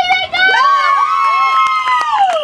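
A spectator's long, drawn-out shout on one high held pitch, cheering on a play, sliding down in pitch near the end.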